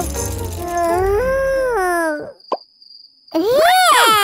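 High-pitched cartoon character voice wailing in long, wavering cries without words, one lasting about two seconds and another starting near the end. Between the two cries there is a brief lull with a thin high tone and a quick falling whistle.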